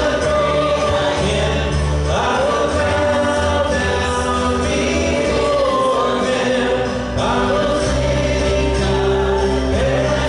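Congregation singing a worship song in long held phrases, with instrumental accompaniment and a steady bass.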